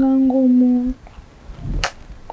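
A person's voice holding one level, drawn-out note for about a second, then a single sharp click near the end.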